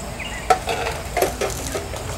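A sharp metallic clink about half a second in, then a few lighter knocks, from hands-on work at a pickup truck's rear wheel hub as a dually wheel is test-fitted. Faint voices underneath.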